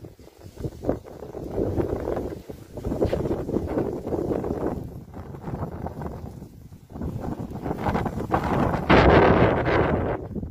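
Wind buffeting the microphone in uneven gusts, swelling and easing, loudest near the end.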